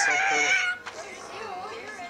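A high, drawn-out vocal cry lasting under a second, followed by quieter voices.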